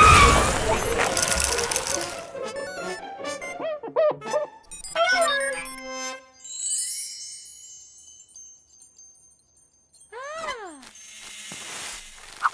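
Cartoon sound effects: a loud rushing hiss of spraying cold air at the start, then tinkling, chiming ice-crackle sounds of things freezing over light music. A quiet gap follows, then a quick run of swooping pitch sweeps near the end.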